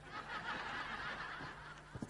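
Studio audience laughter from a sitcom laugh track: a steady swell of many voices lasting about a second and a half, fading near the end.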